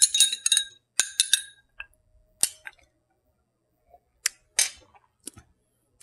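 A long metal bar spoon stirring in a glass, with ringing clinks for about the first second and a half, then a few separate sharp clicks of glass being handled.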